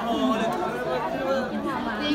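Crowd chatter: many voices talking and calling out at once, overlapping.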